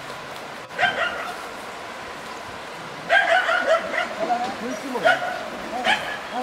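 A small stray dog, trapped in a ravine and frightened, yelping and barking in short high calls: one about a second in, a longer string from about three seconds, and two more near the end.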